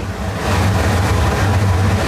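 Steady low rumble and hiss of a restaurant kitchen's running machinery: extractor hood and gas range.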